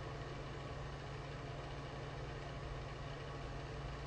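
Quiet, steady low hum with a light even hiss: room background noise with no distinct event.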